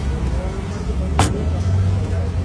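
A steady low engine rumble, with a single sharp click a little after a second in.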